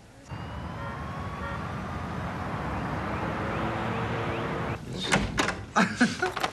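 A steady rushing noise with faint rising whines swells for about four seconds and stops. Then come several sharp clicks and knocks: a door latch and handle as a door is opened.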